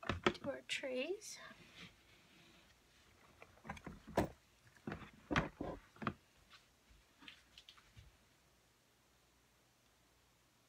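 Handling noise from soap-making work: a cluster of sharp knocks and clicks of tools against containers, thinning to a few faint ticks and stopping about eight seconds in. A brief voice is heard at the very start.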